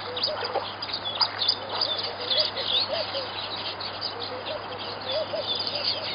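Birds chirping and calling: many quick high chirps throughout, over a lower call repeated several times.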